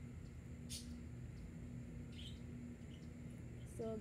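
Quiet outdoor background with a faint steady low hum and a few brief, high chirps, one about a second in and another just past two seconds.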